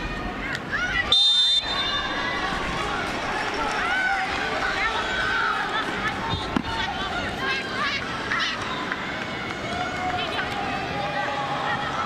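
Soccer stadium crowd noise with scattered shouts from players and spectators. A referee's whistle blows once, briefly, about a second in.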